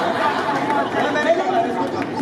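Actors' voices talking on stage in spoken dialogue.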